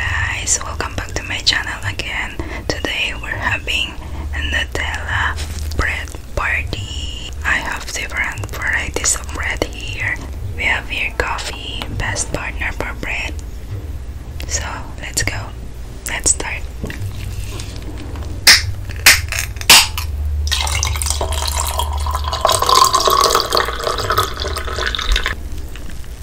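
Soft whispering for the first half, then three sharp clicks at a canned-coffee tin as it is opened, followed by the coffee pouring from the can into a glass mug over ice.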